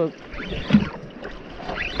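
Wind and water noise around a small boat on the water, with brief snatches of voices about two-thirds of a second in and again near the end.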